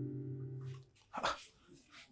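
Soft piano background music fading away within the first second, then a single short bark-like sound about a second in.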